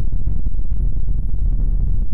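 Low, steady rumbling drone of a logo-outro sound effect.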